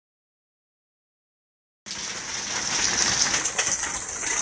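Silence, then about two seconds in a steady hiss of water gushing and splashing from a leaking water tank: its ballcock float valve has come off, so the water runs free.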